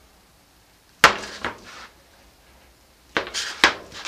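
Knife blade chopping through a soap bar and knocking down onto the die cutter and work surface: one sharp knock about a second in, then a quick cluster of knocks and scrapes near the end.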